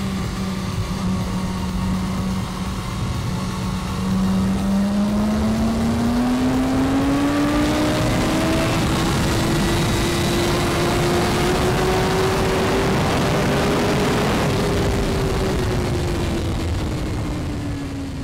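BMW S1000RR inline-four engine heard onboard at speed with wind rush. It holds a steady note for about four seconds, then rises in pitch as the bike accelerates hard out of a corner, eases slightly and fades out at the very end.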